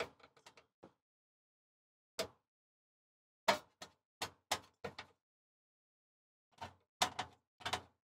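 Small sharp clicks and taps of a screwdriver working the igniter wire connectors on a Suburban SDS2 drop-in cooktop. The clicks are scattered, with a quick run of about six in the middle and a few more near the end.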